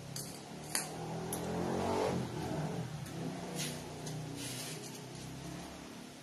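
A motor vehicle's engine passing by, its hum swelling to its loudest about two seconds in and fading away near the end. Light clicks of craft materials being handled are scattered through it.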